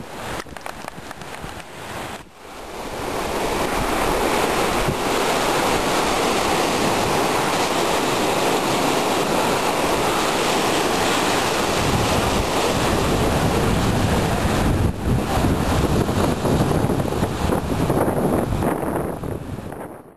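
Sea surf washing onto a sandy beach, with wind buffeting the microphone. It is quieter and uneven at first, then swells to a loud, steady rush about three seconds in and fades near the end.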